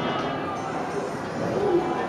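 Indistinct chatter of several children's voices overlapping in a classroom, with no single clear speaker.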